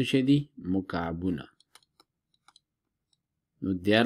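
A man's voice speaking briefly, then a few faint, scattered clicks from a stylus on a drawing tablet as a word is handwritten on screen.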